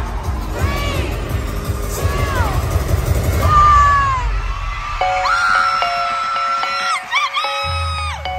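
Loud pop concert music in an arena, with a heavy beat under high, rising-and-falling crowd screams. About five seconds in, the beat thins out and held synthesizer notes take over.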